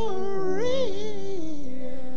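Church keyboard music played during the offering: held chords under a melody line that slides up and down about halfway through.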